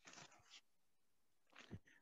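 Near silence, with a few faint, brief rustles or breaths.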